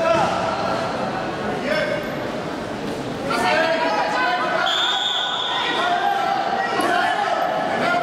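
Voices shouting and calling in a large hall over a wrestling bout, with dull thuds of the wrestlers' bodies and feet on the mat. A short steady whistle sounds about halfway through.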